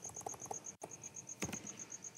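Soft computer keyboard clicks as code is deleted and retyped, with one sharper key click about one and a half seconds in. Behind them, a steady high-pitched chirp repeats about six times a second.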